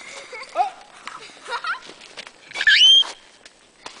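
A short, very high-pitched squeal that sweeps upward in pitch, about three seconds in, after a brief exclaimed "Oh!", with a few small knocks and crunches in between.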